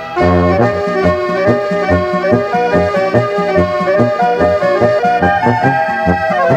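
Austrian folk music (Volksmusik) played from a cassette tape, with sustained chords over a rhythm of short, repeated bass notes.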